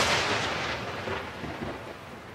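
Title-card sound effect: the rumbling, thunder-like tail of a boom, fading steadily away.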